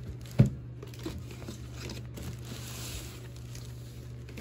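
Packaging being handled during an unboxing: a single sharp knock about half a second in, then faint crinkling and rustling, over a steady low hum.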